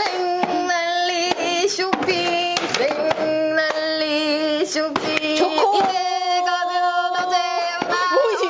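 A woman singing a short shopping jingle in mock pansori style, in long held notes that waver, accompanied by irregular hand taps and slaps on a round tub used as a makeshift drum, with some hand claps.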